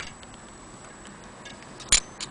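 Antique Vienna wall clock ticking faintly, with one sharp metallic click near the end as its brass-cased weights are handled.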